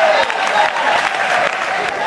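Many people clapping in applause, with a voice calling out that trails off just after it begins.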